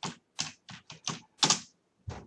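Computer keyboard typing: about seven separate keystrokes at an uneven pace as a word is typed.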